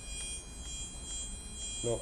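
A micro:bit's built-in speaker sounds a continuous high, buzzy electronic tone, held steady. The program sets this tone to change with the board's tilt.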